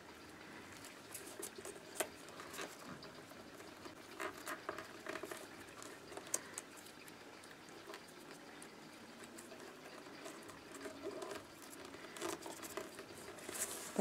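Light rustling and scattered small clicks of rolled newspaper tubes being handled, shifted against one another and set into a perforated metal strip.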